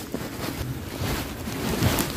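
Jacket fabric rubbing and rustling against the phone's microphone, mixed with wind noise on the mic.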